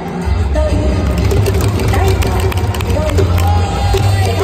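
Ballpark public-address system during a starting-lineup introduction: music plays with a steady heavy bass, and drawn-out syllables of an announcer's voice ring out over the crowd.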